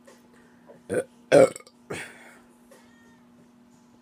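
A woman burps loudly once, about a second and a half in, with a shorter, quieter sound just before it and another just after.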